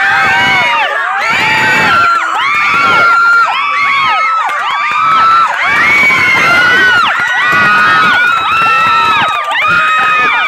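A group of children shrieking and shouting excitedly all at once, loud and without a break, many high voices overlapping.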